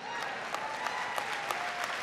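Large dinner audience applauding: a dense, steady patter of many hands clapping.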